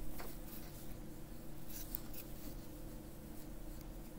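Faint scratching strokes of a marker writing on a whiteboard, a few short strokes, over a steady low hum.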